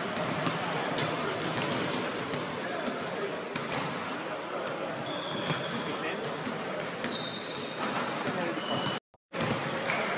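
Basketballs bouncing on a hardwood gym floor, a run of sharp thuds that ring out in a large, echoing gym, with voices talking in the background.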